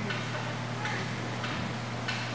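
A few faint, sharp clicks, irregularly spaced, about four in two seconds, from hockey sticks and a puck knocking on the rink's plastic tile floor, over a steady low hum.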